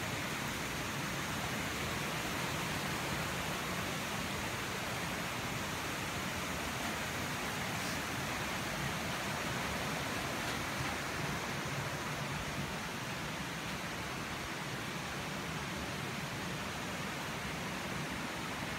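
Steady, even rushing hiss of outdoor ambience that holds the same level throughout, with no distinct events.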